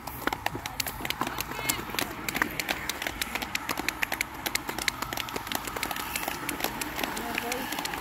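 Scattered, uneven hand clapping from a few spectators, many sharp claps a second, with voices underneath.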